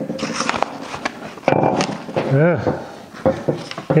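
Sheets of paper rustling and being shuffled by hand, with light knocks of objects moved on a wooden workbench.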